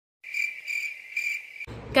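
Cricket-chirping sound effect: a steady, high trill pulsing about three times. It starts and cuts off abruptly, the stock 'crickets' gag for awkward silence after a joke.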